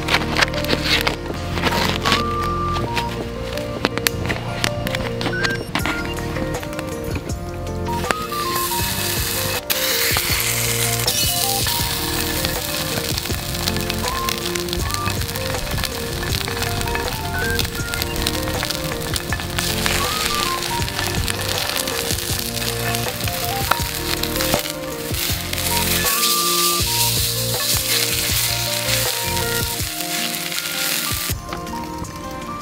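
Background music throughout. From about eight seconds in, a hamburger patty sizzles in oil in an iron frying pan, a steady hiss under the music.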